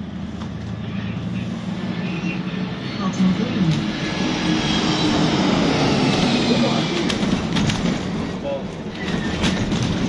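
Inside an ADL Enviro 400 MMC double-decker bus under way: engine and road noise that build up over the first few seconds as it picks up speed, then hold steady. Short rattles and clicks from the bodywork come late on.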